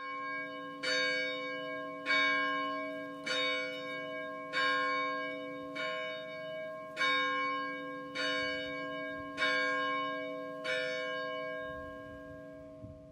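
A large tower bell tolling slowly, about ten strokes roughly one every 1.2 seconds, each stroke ringing on into the next.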